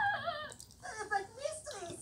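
High-pitched cartoon character voice from a TV speaker: squeaky, wordless cries that slide up and down in pitch, with short pauses between them.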